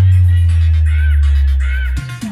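Heavy electronic DJ music through a large outdoor sound system: a long, loud sustained bass note with a short arching high sound, like a crow's caw, repeating over it a few times. The bass cuts off at the end.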